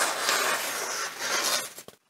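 Chef's knife blade (Dalstrong chef & cleaver hybrid) slicing through a sheet of printer paper held up in the air, in a paper test of the blade's sharpness: a steady rasping hiss that trails off and stops near the end.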